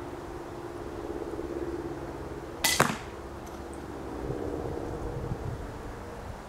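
A single shot from an 80 lb pistol crossbow, heard from the target end. About two and a half seconds in, the string snaps, and a fraction of a second later comes the louder smack of the bolt striking a foam block target. A steady low hum runs underneath.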